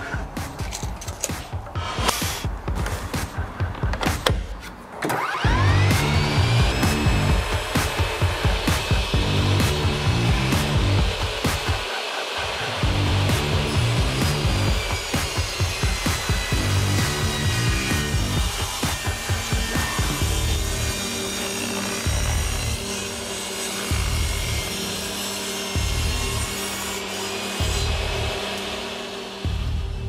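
SawStop jobsite table saw: the motor spins up with a rising whine about five seconds in, then runs steadily as the blade rips through oak boards.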